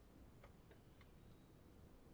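Near silence: room tone with a few faint, short ticks in the first second and a half.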